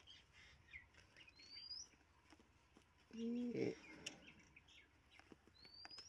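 A bird's short rising whistled call, faint, about a second and a half in and again at the end, over quiet outdoor background; about three seconds in a man's voice makes a brief hum, the loudest sound.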